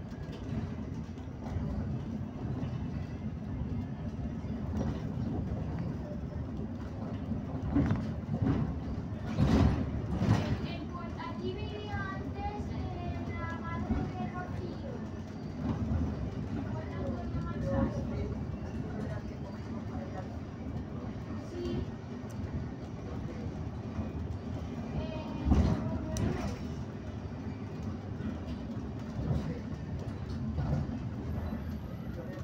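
Steady road rumble of a moving vehicle heard from inside, with a few louder jolts or knocks, two close together about a third of the way in and one more near the end. Faint voices can be heard in the middle.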